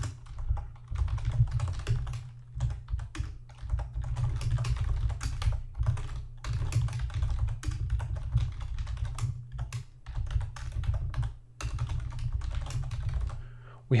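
Typing on a computer keyboard: a quick, irregular run of keystrokes, with a couple of brief pauses near the end.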